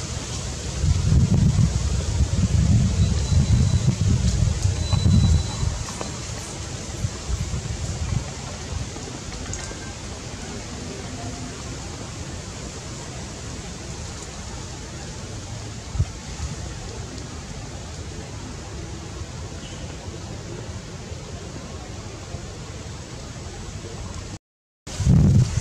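Wind buffeting the microphone in low rumbling gusts for the first few seconds, then easing to a steady outdoor hiss.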